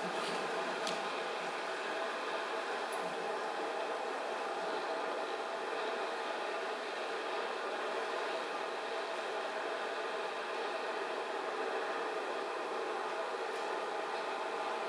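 Steady mechanical hum with several held tones over a noisy hiss, unchanging in level throughout.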